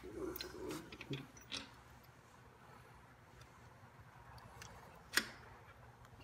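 Small metallic clicks from hand tools and metal parts as a Borg Warner Velvet Drive marine transmission is fitted to the engine: a few faint clicks in the first second and a half, then one sharp click about five seconds in.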